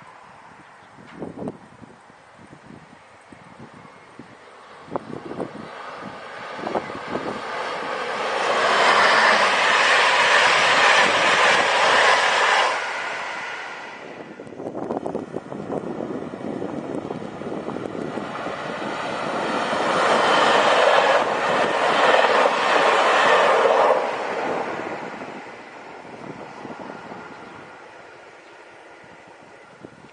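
Two passenger trains hauled by Siemens Krauss-Maffei class 120 "HellasSprinter" electric locomotives pass one after the other, each a loud rush of wheel-on-rail noise that builds up and fades away. The first pass cuts off suddenly, and a few sharp clicks come before it.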